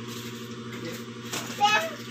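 Faint rustling and ticking of paper banknotes being handled and counted by hand over a steady low hum. About one and a half seconds in, a short, high-pitched voice-like cry with a sliding pitch comes in; it is the loudest sound.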